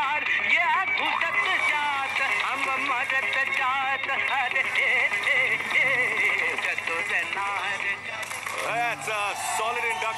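Music with men's voices singing and shouting a chant over it.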